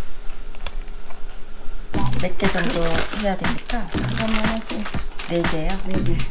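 A kitchen knife clicking quickly and unevenly on a wooden cutting board, mostly from about two seconds in, under talking.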